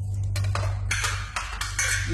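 Crisp baked honey-and-butter lace wafer sheet crackling and snapping in several sharp crackles as it is cut and broken apart on a board. The sheet has already set hard as it cooled, over a steady low hum.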